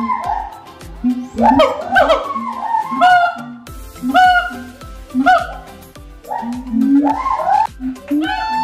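Siamang and black-handed gibbon calling back and forth: a series of loud, rising, whooping calls in quick groups.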